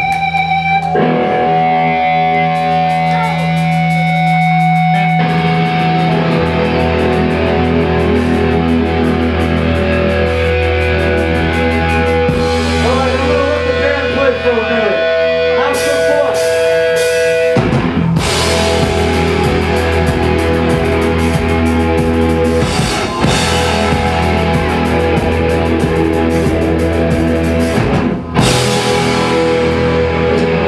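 Thrash metal band playing live through distorted electric guitars: the song opens on ringing sustained guitar chords, and low bass fills in after a few seconds. The full band with drums and cymbals comes in hard about eighteen seconds in.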